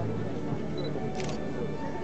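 Onlookers' chatter, with a digital camera's short high focus beep and then a quick rattle of shutter clicks just after a second in.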